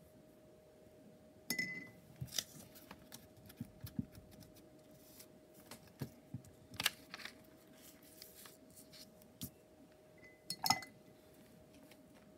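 Scattered light knocks and taps of small hard objects, with two short ringing clinks like glass or ceramic being struck, one about a second and a half in and a louder one near the end, over a faint steady hum.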